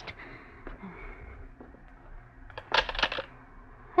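Quiet hiss with a few faint clicks, then a short clatter near the end: a telephone receiver being lifted off its hook, a radio-drama sound effect.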